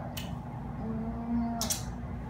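A woman's drawn-out low hum or moo-like vocal sound, held for under a second in the middle, then a short hissing breath.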